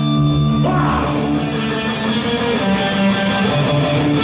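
Hard rock band playing live: electric guitars, bass and drums with a steady cymbal beat, and a singer's voice over them.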